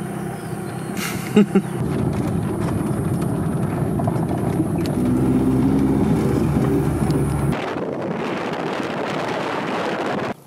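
A car's engine and road noise heard from inside the cabin, with the engine note coming up strongly about halfway through. Near the end the engine drops away abruptly, leaving a steady rushing noise.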